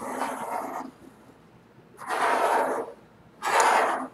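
Pencil drawn along the edge of a plastic drafting triangle on paper, three scratchy strokes each just under a second long, laying down a medium-weight line point to point.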